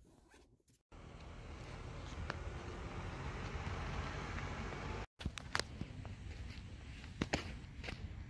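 Rustling handling noise on a phone microphone that builds over a few seconds, then a few soft footfalls on sand near the end.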